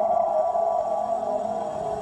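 A metal post ringing after being struck by hand: a steady tone with several overtones that slowly fades.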